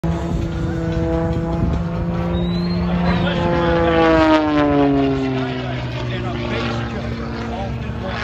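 Single-engine propeller aerobatic plane flying past overhead, its engine and propeller drone dropping in pitch as it goes by, loudest about halfway through.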